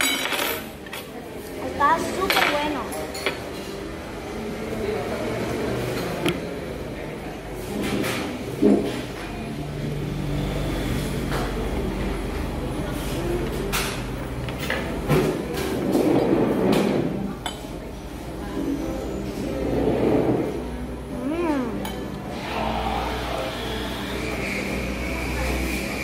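Metal forks clinking and scraping against a plate in scattered short clicks, with voices in the background.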